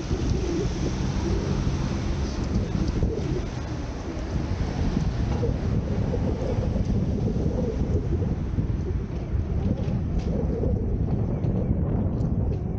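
Wind buffeting the microphone of a helmet-mounted camera while riding a bicycle, a steady low rumble that does not let up.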